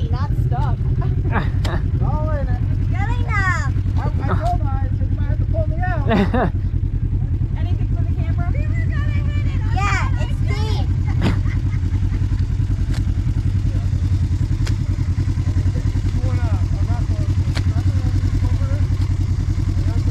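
Side-by-side UTV engine idling steadily, a low even rumble, with the machine sunk to its body in a mud hole. People's voices talk over it at times.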